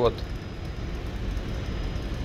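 A steady low background rumble with no clear events in it, after a last spoken word at the very start.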